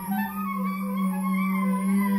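Experimental chamber music performed live: a low note slides up and is then held steady, with wavering, gliding higher tones above it.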